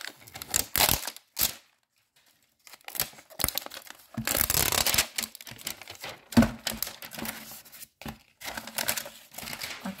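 Wrapping being torn and peeled off a plastic toy capsule by hand, in irregular bursts of rustling and crinkling. There is a short quiet pause about two seconds in and a longer, louder tear around the middle.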